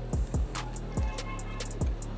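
Background music with a low bass line and a few kick-drum beats.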